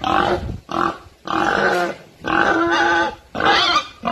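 Pig sound effect: a run of about five squeals in quick succession, each under a second long, with short gaps between them.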